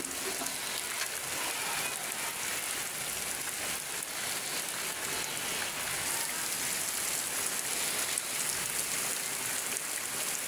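Heavy rain falling steadily on a flooded courtyard: a constant even hiss.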